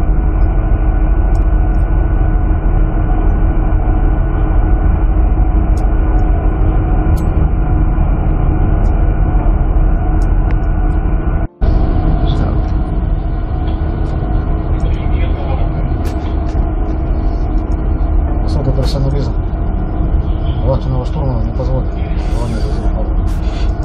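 Loud, steady machinery noise on a stern trawler's deck, the ship's engines and deck machinery running with a low rumble and steady hum. It breaks off briefly about halfway through and then resumes.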